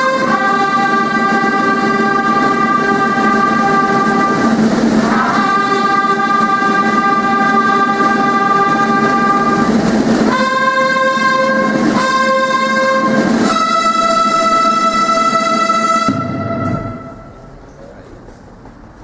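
Military band's brass section playing slow, long-held chords, each sustained for several seconds, with the last chord dying away about sixteen seconds in.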